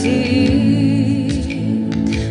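Live worship band music: sustained keyboard chords over bass guitar, with a woman's voice singing softly.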